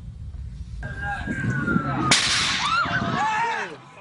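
A thin whistling tone slowly falling in pitch, then about two seconds in a sudden loud crack-like burst, followed by a jumble of short wavering high-pitched sounds that fade near the end.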